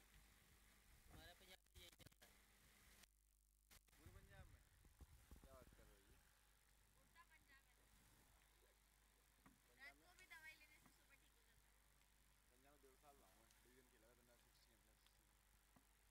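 Near silence, with faint distant voices now and then and a few soft clicks near the start.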